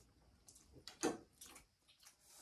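Metal forks clicking and scraping against ceramic plates while eating noodles: a few small clicks, with one louder knock about a second in.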